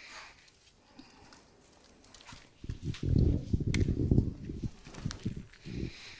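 Handheld microphone handling noise: a run of loud, irregular low thumps and rumbles about halfway through as the microphone is passed to the next speaker.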